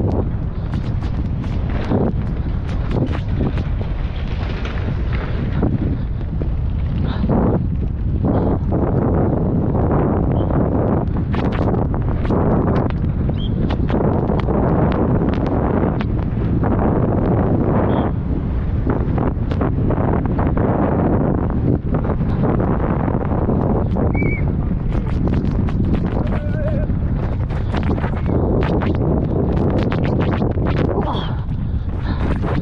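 Downhill mountain bike, a Canyon Sender, heard from a helmet camera as it runs fast down a dirt and rock trail. Wind rushes steadily over the microphone and the tyres rumble on the ground, with frequent sharp clicks and knocks as the bike rattles over bumps and rocks.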